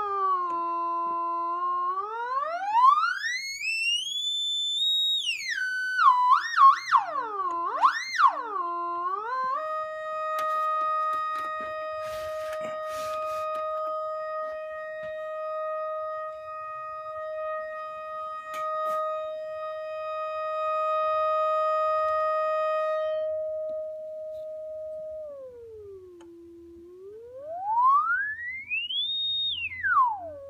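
1943 HP 200A audio oscillator sounding through a loudspeaker: a single steady electronic tone swept by hand on the frequency dial. It drops to a low note, glides up to a high whistle and back down, wobbles quickly up and down, and then holds one mid-pitched note for about fifteen seconds. Near the end it glides down, sweeps up high and falls again.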